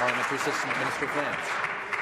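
Members of a legislative chamber applauding, with a voice speaking over the clapping.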